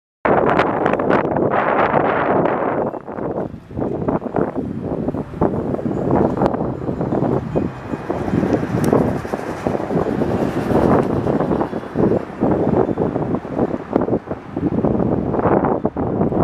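Wind buffeting the camera's microphone: a loud, uneven rumbling noise that rises and falls in gusts, easing briefly a few seconds in.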